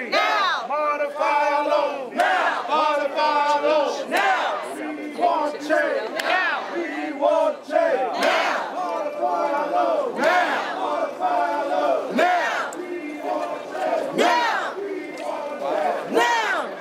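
Crowd of protest marchers chanting slogans in unison, the shouted phrases coming about once a second.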